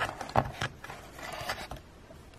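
Plastic scraper card dragged across a metal nail-stamping plate, scraping excess polish off the etched design. It starts with two sharp taps in the first half second, and a short scraping swipe follows about a second and a half in.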